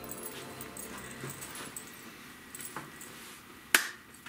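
Light rustling and clicking of a person settling at a wooden table and handling a deck of tarot cards, with one sharp tap near the end as the loudest sound. The tail of soft music fades out at the start.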